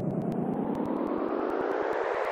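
Electronic noise riser in a trap beat: a whooshing sweep that climbs steadily in pitch over a fast, even run of ticks, building up to the next section of the song.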